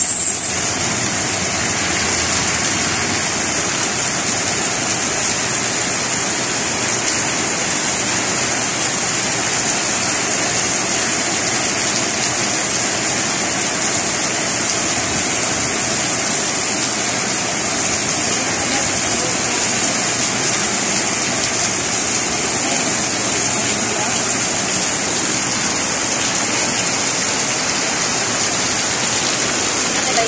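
Heavy rain falling steadily on a street, a constant even hiss.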